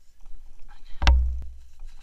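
Rustling of a riding glove being pulled onto a hand, with one sharp thump about halfway through followed by a short low boom.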